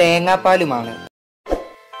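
A man speaking over soft background music. About halfway through the sound cuts out completely for a moment, then comes back with a short soft plop before the speech resumes.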